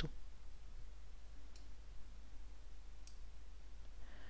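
Two faint, short clicks about a second and a half apart over a steady low hum.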